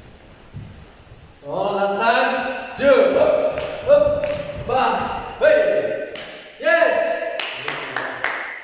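A man's voice giving short, loud shouts in a steady rhythm, about one a second, each rising then falling in pitch. They begin after a quiet first second or so and go with karate techniques being performed.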